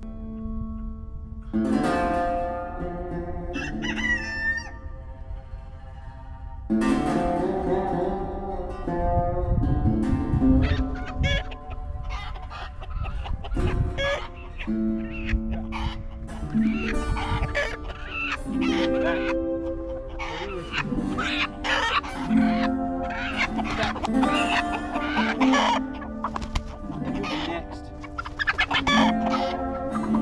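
Chickens clucking and a rooster crowing, over background music with plucked strings.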